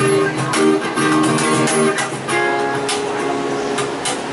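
Acoustic guitar strumming chords over cajon strokes, the closing bars of a live pop cover; about two seconds in a final chord is struck and left to ring.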